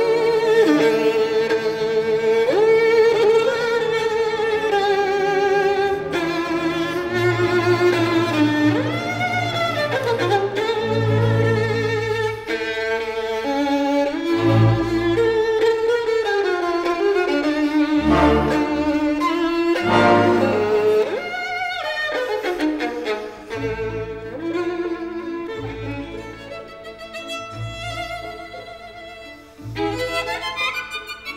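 Solo violin playing a slow, expressive melody with wide vibrato, mostly in its lower-middle register, over low sustained accompanying notes; it grows quieter near the end.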